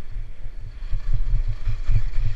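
Wind buffeting a moving skier's camera microphone: a loud, gusting low rumble that swells and drops, with a faint hiss of skis running over hard, windblown snow.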